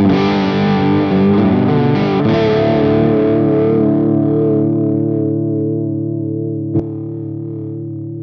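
Electric guitar chord struck once through a NUX MG-300 multi-effect unit with its Vibe chorus/vibrato effect on, left to ring so the notes waver gently in pitch as they slowly fade. A short click comes near the end.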